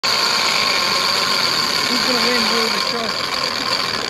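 Large conventional fishing reel's drag and clicker giving off a steady high buzzing whine as a hooked great white shark pulls line off the spool, with low voices murmuring underneath.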